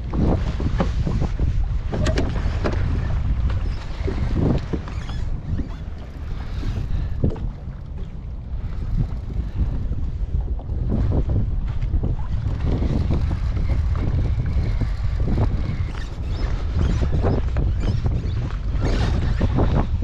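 Wind buffeting the camera microphone in a steady low rumble, with frequent small slaps of choppy water against the kayak's hull.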